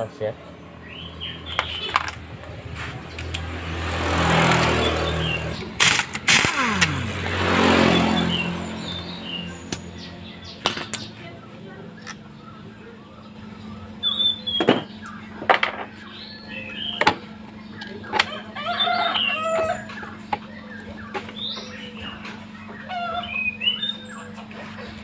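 Metal clinks and knocks as the clutch nut and clutch assembly are worked off a Honda Beat scooter's CVT. In the first half, a louder whirring noise swells and fades twice. Birds chirp in the background.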